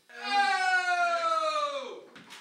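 A man's long, drawn-out vocal "aaah" lasting about two seconds. Its pitch slides slowly down and then drops off sharply at the end.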